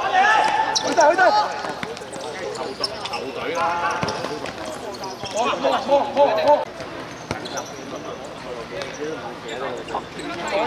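Futsal players shouting to each other across the court, with a few sharp thuds of the ball, the clearest about four seconds in.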